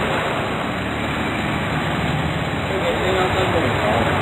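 Steady noise of rain and idling motorcycle and three-wheeler engines in a street queue, with faint voices near the end.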